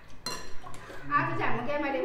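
A spoon clinks once against a ceramic bowl a moment in, with a short bright ring after it.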